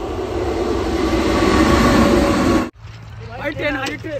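A train passing close by: a loud, steady rumble that builds and cuts off abruptly about three-quarters of the way through, followed by a shouting voice near the end.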